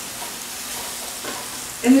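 Sliced onion and carrots sizzling steadily in a frying pan as they are stirred with tongs.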